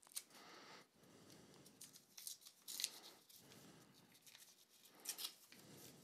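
Pocket-knife blade slitting open a small paper envelope: faint, short scraping and tearing sounds a few times, the loudest about three seconds in.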